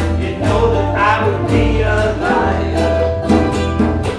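Group music: several ukuleles strummed in a steady rhythm over a U-Bass line and a hand drum, with voices singing a verse.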